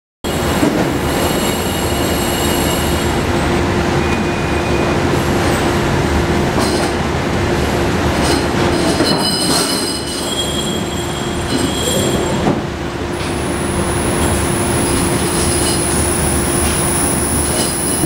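Ultrasonic plating bath in operation: a loud, steady hiss over a low hum, with high thin whines that come and go and one shrill whine holding from about two-thirds of the way in.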